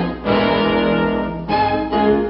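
Orchestral cartoon score led by brass, playing held chords that change to new notes about one and a half seconds in.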